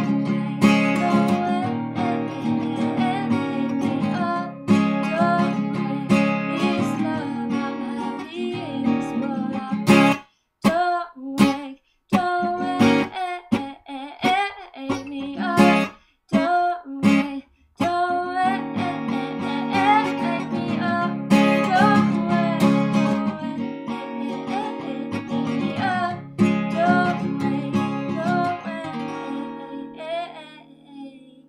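Steel-string acoustic guitar strummed in steady chords, with a woman singing over it. About ten seconds in, the strumming breaks into short separate chords cut off by sudden silences, then the steady strumming resumes a few seconds later.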